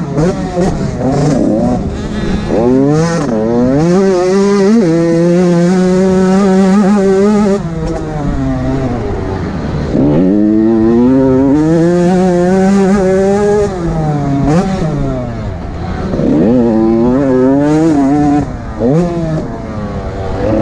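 An 85cc two-stroke motocross bike's engine, heard from on board, revving hard: its pitch climbs, holds high for a few seconds, then drops away and climbs again, five or six times over.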